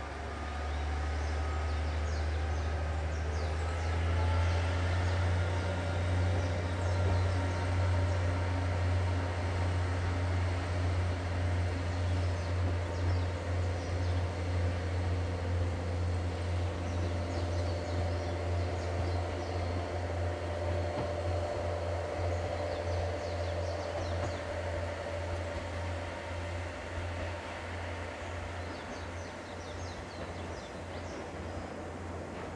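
JR KiHa 40-series diesel railcar pulling away from the platform, its diesel engine running under power with a deep steady drone. The pitch rises through the first few seconds, then the sound slowly fades as the train moves off. Birds chirp faintly.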